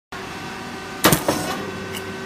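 Rice cake puffing machine running with a steady hum, then about a second in a loud sudden pop with a brief rushing noise as the heated mold opens and the cakes puff, followed by a smaller second burst.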